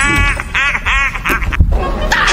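Several short, nasal, quack-like calls in quick succession in the first second or so.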